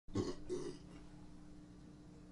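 Two short throaty sounds from a person in the first second, then a faint steady hum.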